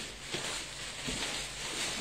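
Rustling of clothes as a bundle of garments is handled and sorted, with a couple of faint light taps.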